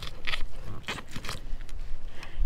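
A 7-inch fillet knife cutting through the large, tough scales of a redfish just behind the gill plate: an irregular run of sharp clicks and scratches as the blade saws through the scales.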